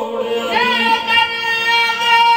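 Qawwali music: harmoniums playing under a long, held high sung note.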